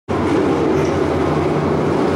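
Engines of a pack of sport modified dirt-track race cars running together as they circle the dirt oval: a loud, steady rumble.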